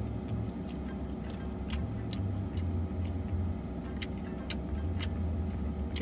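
Chewing a mouthful of soft pretzel dipped in cheese sauce, with scattered small wet mouth clicks, over a steady low hum inside a car.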